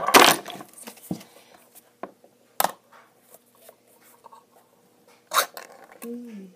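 Clinks and knocks of metal tin cans and spoons being handled on a table. There is a loud cluster at the start, then single clinks over the next few seconds, with a louder one about two and a half seconds in and another near the end.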